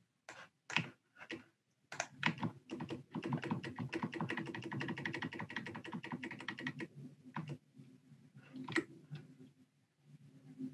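Typing on a computer keyboard: a few separate keystrokes, then a run of rapid typing lasting about four seconds, then a few last keystrokes.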